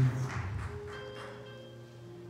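Church keyboard holding soft, sustained chord notes under the sermon, fading lower over the two seconds as the preacher's voice trails off at the start.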